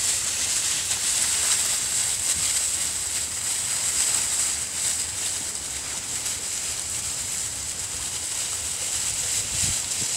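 Dry fallen leaves rustling and crunching as puppies run through them, over a steady high hiss.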